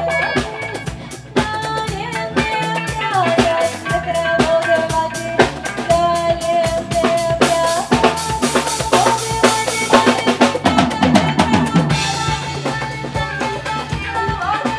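A live acid-jazz/funk band playing, with a busy drum-kit groove to the fore over bass, guitar and long held melody notes; bright cymbal wash swells in about eight seconds in and again near the end.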